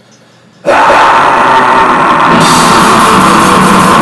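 Raw black metal band comes in suddenly at full volume about half a second in, after a faint lead-in: distorted electric guitar, bass and drum kit with dense cymbals. It is a pre-mix recording, each instrument captured on a mobile phone and the tracks layered together.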